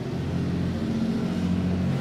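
Steady low hum with no speech over it.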